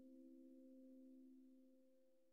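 Faint piano chord ringing out and dying away, several held notes fading further near the end.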